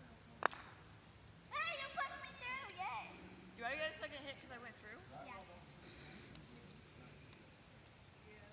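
Insects chirring steadily in a high pitch, with one sharp knock about half a second in. Faint, distant voices come in around a second and a half and again near four seconds.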